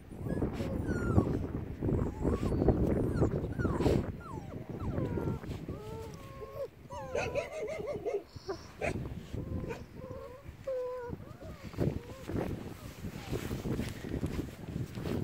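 Six-week-old Bernese mountain dog puppies whimpering and yipping: many short whines that rise and fall in pitch, over a low rustling noise that is loudest in the first few seconds.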